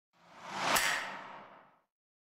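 Disney+ logo sound effect: a single whoosh swells up, peaks in a sharp hit just under a second in, then fades away over about a second.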